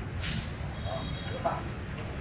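Indistinct background voices over a steady low rumble, with a brief hiss about a quarter second in.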